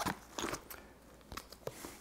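Paper packaging being handled: a few short, quiet rustles and clicks.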